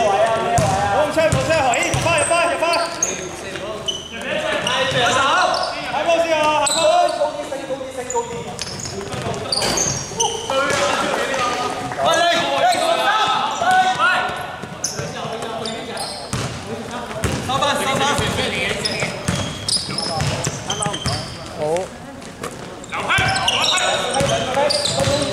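Basketball dribbled on a hardwood court in a large indoor sports hall, with players' voices calling and shouting on and off throughout.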